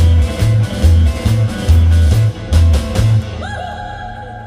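Live rock-and-roll band with electric guitars, bass and drums playing through a PA, a driving bass-and-drum beat that stops a little after three seconds in. A single held note with a short upward slide rings on and fades as the song ends.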